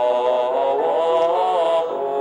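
Voices chanting a Buddhist lamp-offering aspiration verse to a slow melody, with long held notes that glide smoothly from pitch to pitch.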